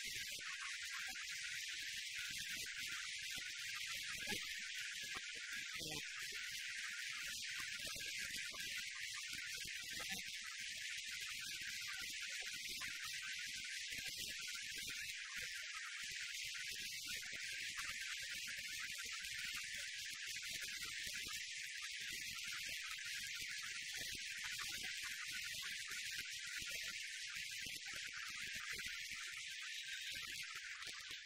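Audience applauding steadily, a continuous even clatter with no speech over it.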